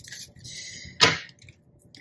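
A tarot card being handled with a soft rustle, then laid down on a wooden table with one sharp slap about a second in.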